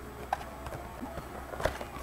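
Cardboard trading-card box being handled and turned over, with a few sharp clicks and taps, two louder ones about a third of a second in and again past halfway.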